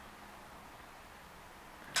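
Quiet room tone with a faint low hum, then a single sharp tap or click near the end.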